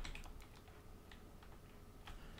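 Faint, sparse clicks of a computer keyboard: a few quiet keystrokes, a cluster in the first half second, then single taps about a second in and near the middle.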